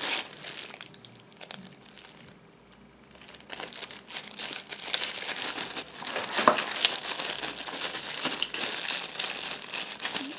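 Thin plastic packaging bags crinkling and rustling as they are handled, with small clicks of hard plastic parts. It drops almost to quiet for about two seconds after the first second, then the crinkling picks up again and goes on.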